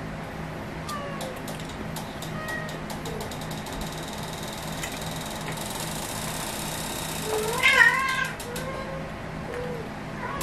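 A cat meowing once, loudly, about three quarters of the way in, over quiet background music and scattered small clicks.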